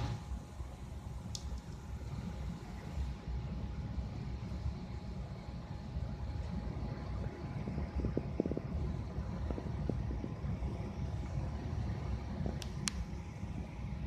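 Steady low outdoor rumble with a faint constant hum above it, broken by a couple of short faint ticks, one early on and one near the end.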